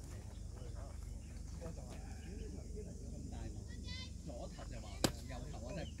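A single sharp pop about five seconds in: a pitched baseball smacking into the catcher's leather mitt. Faint voices and a few short chirps sit behind it.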